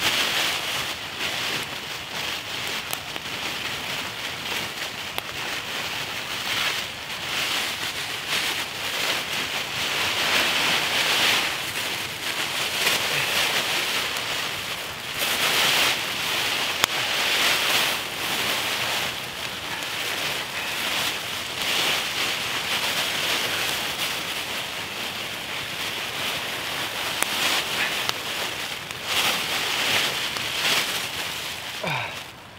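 Emergency survival blanket of thin foil-coated plastic crinkling and rustling as it is unfolded and wrapped around the body, a dense crackling rustle that swells and eases as it is handled.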